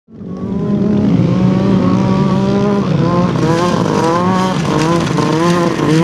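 Arctic Cat 800 snowmobile's two-stroke engine running hard as the sled is ridden across sand, fading in at the start, then rising and falling in pitch over and over from about halfway through as the throttle works.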